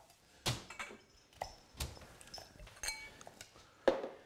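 A chef's knife chopping fresh dill on a wooden cutting board in about half a dozen irregular strokes, with a couple of light clinks.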